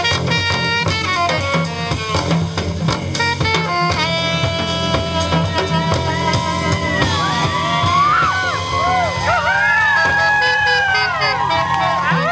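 Live jazz combo of saxophone, upright bass, drum kit and keyboard playing. From about halfway through, a high melody slides and bends up and down in pitch over the steady bass and drums.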